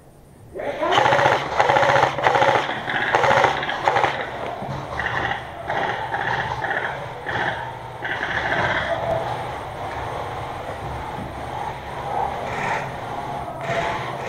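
Airsoft rifle firing rapid full-auto bursts, starting suddenly about half a second in and loudest over the first few seconds, then thinning out to a lower, steadier clatter.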